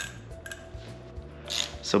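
Soft background music with a few faint metallic clicks as hands work a motorcycle clutch cable out of its lever.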